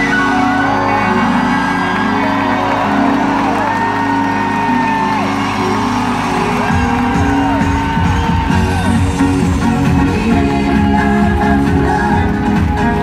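Live pop concert music through an arena PA, held synth chords with high gliding wails over them; a pounding bass beat kicks in about seven seconds in. Audience whoops sound over the music.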